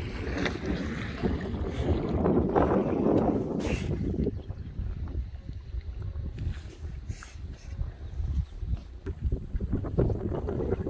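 Wind rumbling on the microphone, stronger for the first four seconds and then easing off, with a few light knocks of footsteps on a wooden dock.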